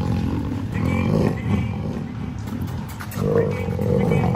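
A young lion growling low and rough as a dog comes close, a sign of its anger at the dog. The growl swells about a second in and again near the end.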